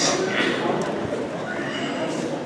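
A congregation sitting down: shuffling, rustling and seat creaks, with scattered voices.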